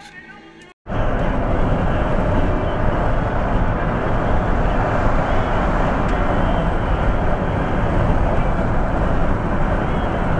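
A van driving along a highway: loud, steady road, wind and engine noise with no clear pitch. It starts suddenly about a second in.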